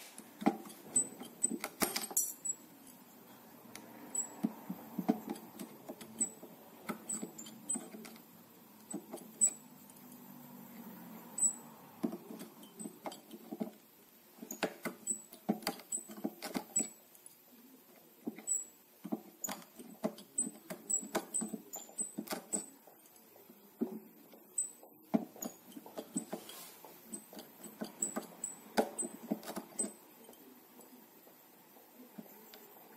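Irregular sharp metallic clicks and taps, in clusters, some with a brief high ping, from a hand tool and the slack steel strings as work goes on at the nut of a Fender Stratocaster neck.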